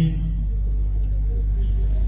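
A steady low hum, with the tail of a spoken word just at the start.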